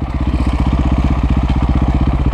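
KTM 525 SX dirt bike's single-cylinder four-stroke engine running at low, steady revs, with an even, rapid pulsing beat.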